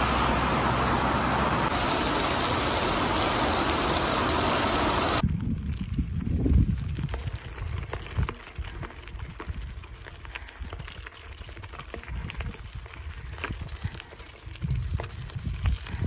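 Heavy rain pouring down, a loud steady hiss that cuts off suddenly about five seconds in. After the cut comes a much quieter outdoor stretch with uneven low rumbling and a few faint clicks.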